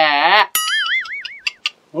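Cartoon-style comedy sound effect: a tone whose pitch wobbles up and down about four times a second for about a second, coming in just after a man's spoken line ends.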